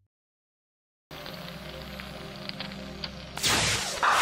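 Silence for about a second, then a logo sting: a sustained low musical drone with crackling, fire-like noise over it, ending with a loud whoosh near the end.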